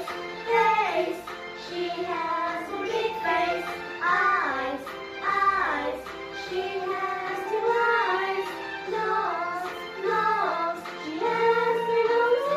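A children's song: a child's voice singing a simple melody over instrumental backing music.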